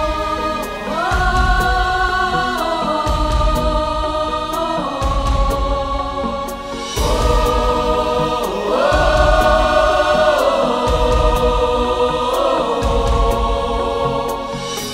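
A mixed choir singing long held wordless chords that change about every two seconds, over a backing track with a deep bass beat landing about every two seconds.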